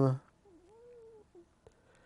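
A faint cat's meow: one call of under a second that rises and falls in pitch, followed by a short click.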